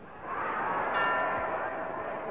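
Boxing ring bell struck once about a second in, ringing and fading, marking the end of the round, over a swell of crowd noise.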